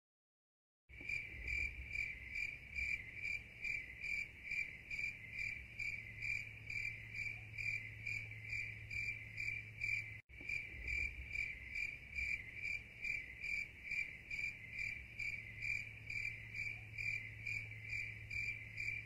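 Crickets chirping in a steady, even rhythm of about three chirps a second, starting about a second in, with a brief break about ten seconds in.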